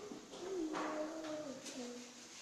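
A person's voice in long, drawn-out vowels, gliding and stepping down in pitch, with a brief scrape about three-quarters of a second in.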